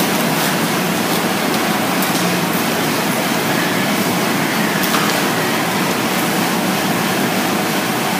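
Steady, even hiss-like background noise with no speech: the room tone of a meeting room.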